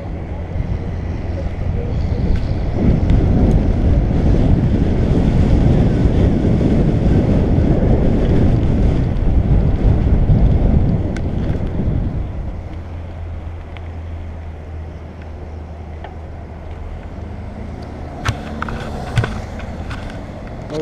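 Wind noise buffeting an action camera's microphone as a bicycle rolls across grass, loud for the first dozen seconds and then easing off.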